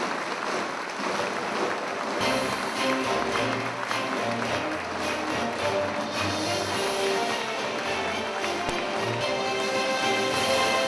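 Loud rally music playing over audience applause. The bass comes in about two seconds in.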